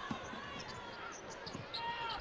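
Basketball dribbled on a hardwood court, a few short low thumps over quiet arena background noise.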